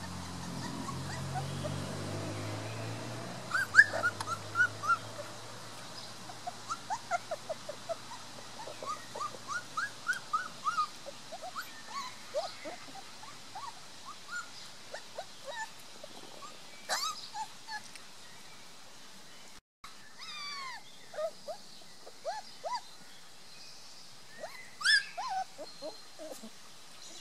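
Three-week-old Beauceron puppies whimpering and squeaking: many short, high cries, often in quick runs, while they jostle to nurse. A low drone fades out in the first few seconds.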